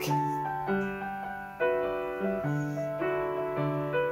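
Background piano music: a slow melody of held notes, changing about once a second.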